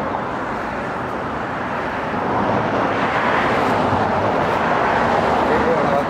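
Steady outdoor background roar like nearby street traffic, with a brief faint voice near the end.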